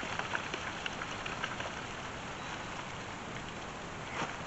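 Loose dirt crunching and scraping under a long-handled hand tool, in short irregular gritty crackles over a steady hiss, busiest in the first second and a half.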